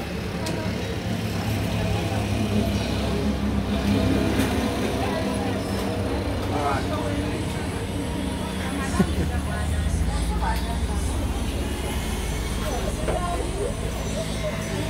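A steady low engine hum that gets heavier about ten seconds in, under faint background voices, with a single sharp click about nine seconds in.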